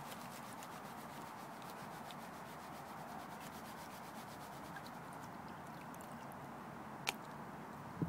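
Water and gravel washing and swirling in a plastic gold pan as it is worked, a steady swishing, with one sharp click about seven seconds in.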